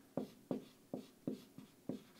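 Dry-erase marker writing on a whiteboard: six short strokes, roughly three a second, as a box is drawn and letters are written.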